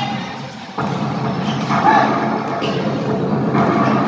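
A crowd of basketball spectators: a steady din of many voices with scattered shouts over a low hum, jumping up suddenly in level just under a second in.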